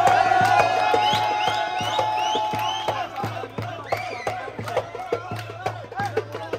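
Live street music: a steady drum beat under a held melodic note that stops about halfway through, with a crowd cheering and whooping over it.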